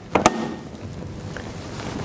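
Main switch on a booster station's switch cabinet turned on: two sharp clicks, then a steady rushing hum as the system powers up.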